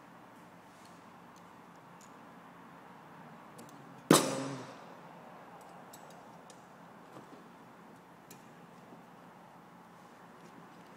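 Bolt cutters snipping through heavy wire once: a single sharp snap with a short ringing tail about four seconds in. Faint small clicks of the wire being handled come before and after it.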